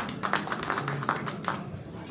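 Scattered clapping from a few people, quick irregular claps that thin out about a second and a half in.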